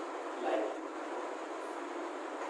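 Chalk scraping along a blackboard as straight lines are drawn, over a steady background hiss, with one short, slightly louder stroke about half a second in.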